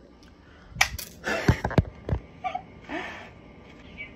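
Handling noise: a quick run of sharp knocks and clicks, about five in a second and a half, as the phone and the plastic blender cup and its freshly opened lid are moved about, with short rushing noises in between.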